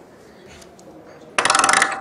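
A sudden half-second burst of rapid, evenly spaced metallic clicking about one and a half seconds in, louder than the speech around it. It is the typewriter-style sound effect of a presentation slide's title animation, played over the hall's speakers.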